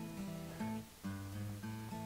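Quiet background music: acoustic guitar playing soft sustained notes.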